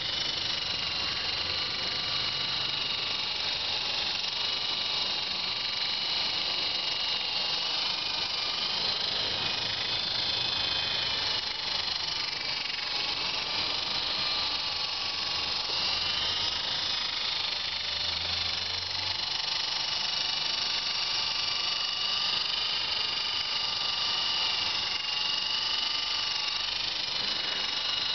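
E-Sky Big Lama coaxial RC helicopter with twin brushless motors in flight: a steady high-pitched electric whine from the motors and two counter-rotating rotors, its pitch wavering slightly up and down.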